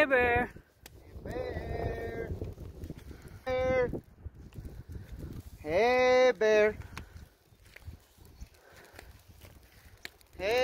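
A hiker shouting long, drawn-out calls at a grizzly bear to scare it away from the campsite. There are about four loud yells, each rising in pitch and then held: one at the start, one about a second in, one around three and a half seconds, and a two-part call around six seconds.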